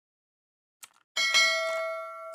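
A short click, then a bell-chime 'ding' sound effect for a subscribe-and-notification-bell animation, which rings with several steady tones and fades.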